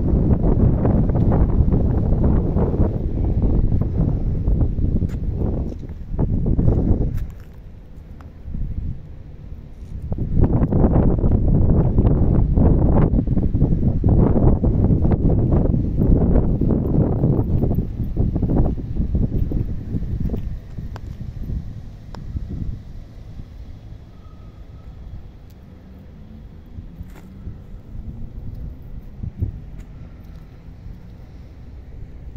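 Wind buffeting the microphone in strong gusts: a loud low rumble for the first several seconds, a brief lull, another long gust, then easing to a weaker rumble in the second half.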